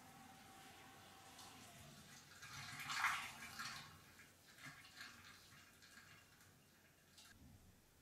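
Hot elderflower syrup poured from a stainless steel pot through a plastic funnel into a glass bottle: a faint trickle, loudest about three seconds in, followed by a few brief splashes.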